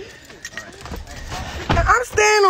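Faint, muffled speech with light knocks and rustles from a phone being handled, and a louder low rumble just before the end.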